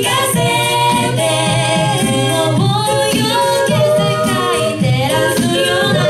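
A cappella group of six mixed male and female voices singing in close harmony into handheld microphones, with sustained chords over a steady low bass line.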